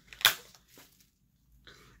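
A single sharp click about a quarter second in, then two faint ticks: a small makeup item, such as a highlighter pan or its packaging, being handled.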